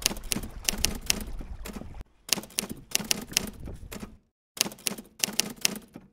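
Typewriter sound effect: rapid key clacks in several bursts with brief pauses. Low wind noise underneath stops about two seconds in.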